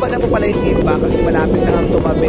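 Steady low rumble of a passenger ferry's engines under way, with people's voices talking over it.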